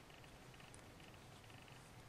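Near silence: faint room tone with a few soft ticks of metal knitting needles being worked.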